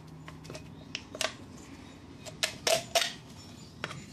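A thin aluminum soda can and its cut-out bottom being handled: a scattered string of light, sharp metal clicks and taps, a cluster of the louder ones in the latter half.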